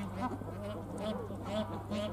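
Bar-headed geese calling: short nasal honks, several to the second and overlapping, from more than one bird.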